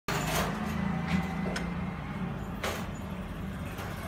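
A few sharp clicks of keys being pressed on a computer keyboard, over a steady low background hum.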